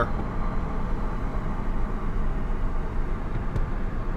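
Steady road and tyre rumble heard inside the cabin of an electric-converted BMW 7 Series rolling at about 30 mph with the motor's power off, so there is no engine or motor note.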